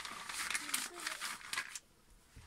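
Thin plastic shower cap crinkling and rustling as it is pulled on over the head, a dense run of crackles that stops shortly before the end.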